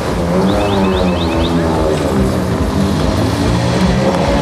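Citroën C4 WRC rally car's turbocharged 2.0-litre four-cylinder engine running at low speed, its pitch wavering up and down with the throttle as the car creeps along. A quick run of short high chirps sounds about a second in.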